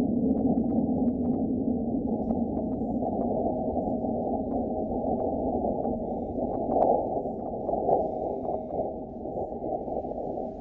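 Seismometer data from NASA's InSight lander of a meteoroid impact on Mars, sped up about a hundred times into audible sound: a rough rumble scattered with clicks and pops. It swells twice about two-thirds of the way through, during the large S-wave bulge of the record, and slowly fades near the end.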